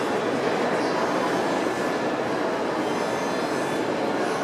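Steady background noise of an indoor shopping mall concourse, an even wash of sound with no distinct events.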